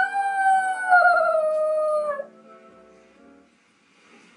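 Yorkshire Terrier howling along to a TV theme tune: one long howl that swoops up at its start, holds, sags slowly in pitch and breaks off a little over two seconds in. The tune's held notes go on faintly underneath and fade out soon after.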